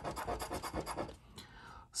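A metal coin scratching the latex coating off a lottery scratch-off ticket in quick, even strokes, about eight or nine a second, stopping about a second in.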